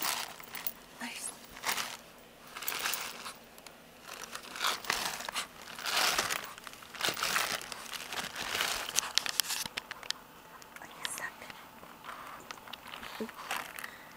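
A Shih Tzu digging and nosing in a plastic bag, the bag crinkling and rustling in irregular bursts, busiest over the first ten seconds or so and sparser after.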